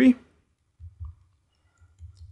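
The tail of a spoken word, then a few faint low taps and clicks from a stylus writing on a pen tablet, about a second in and again near the end.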